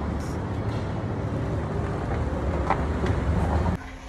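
A steady low rumble of background noise cuts off abruptly shortly before the end.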